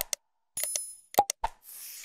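Subscribe-and-like animation sound effects: sharp clicks and pops, a short bell-like ding about half a second in, and a hiss near the end.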